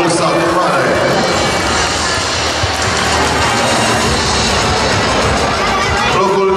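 Music playing over audience applause, a dense, steady clapping.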